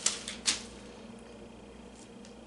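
Thin Bible pages being flipped by hand: two crisp paper flicks in the first half-second, the second the louder, then faint rustling as the pages are handled.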